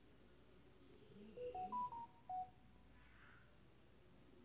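A short electronic jingle of five quick beep tones, stepping up in pitch and then down again, over about a second in the middle of otherwise quiet room tone.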